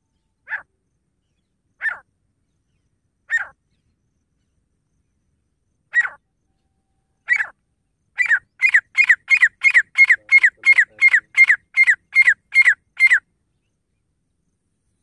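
Grey francolin calling: a few harsh notes spaced about a second and a half apart, then a fast run of about three a second through the last five seconds, each note falling slightly in pitch.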